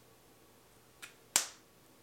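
Lip gloss applicator wand pulled from its tube: a faint click about a second in, then a sharp pop as the wand comes free of the stopper.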